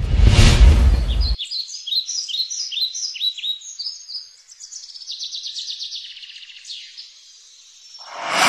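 A loud rushing noise that cuts off suddenly after about a second and a half, then birds singing: a series of quick, high, down-slurred chirps about twice a second, running into a rapid trill before fading out near the end.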